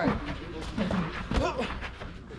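Men's voices shouting instructions during a clinch, with a few sharp thuds in between, the loudest about halfway through.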